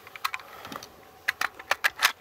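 A string of light metallic clicks and rattles from an M1 carbine magazine being handled and seated in an Inland M1 Carbine, a few scattered clicks at first and then quicker ones in the second half.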